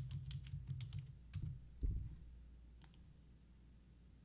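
Typing on a computer keyboard: a quick run of key clicks over the first two seconds, with a heavier low thump near the end of the run.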